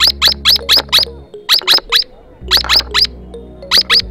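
Swift parrots calling: a rapid series of sharp, high piping calls, each sliding down in pitch, about four a second in short bursts with brief pauses between. Soft background music with sustained low notes runs underneath.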